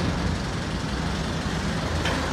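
Kubota M7000DT tractor's diesel engine running steadily under load as the tractor creeps up the ramps onto a truck bed.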